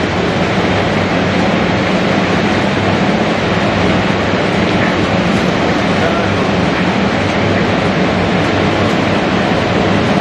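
Motor-driven groundnut shelling machine running steadily, a loud, even mechanical clatter over a low electric hum.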